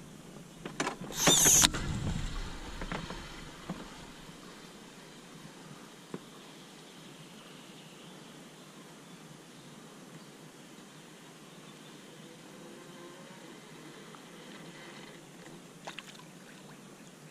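Handling of a feeder fishing rod in a small boat: one loud scraping knock about a second in as the rod is taken up after a bite, trailing off over the next two seconds, then only a faint steady background with a single click.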